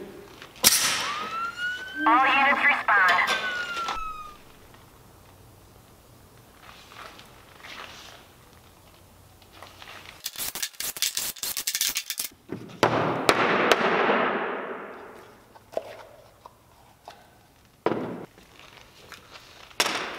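Pressure pot being vented: air hisses out suddenly and whistles briefly with gliding tones. Later a drill driver runs in a rapid rattling burst, backing the screws out of a bolted plastic resin mold box. A long hiss follows and fades away.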